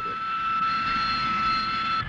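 Hawker Siddeley Harrier's Rolls-Royce Pegasus jet engine running, a steady high whine over an even rushing noise.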